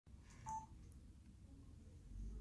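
Near silence: quiet room tone, broken by one short electronic beep about half a second in.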